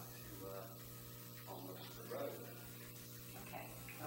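Faint, indistinct talking over a steady low electrical hum.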